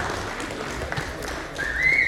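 A noisy indoor hall with a few faint knocks, then near the end a loud whistle begins, its pitch wavering up and down.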